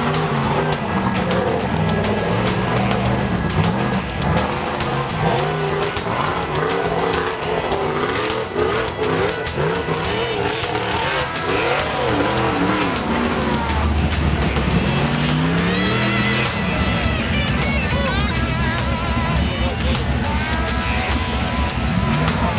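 Off-road racing buggy engines revving hard under load as they climb a dirt hill, the pitch rising and falling again and again, mixed with background music.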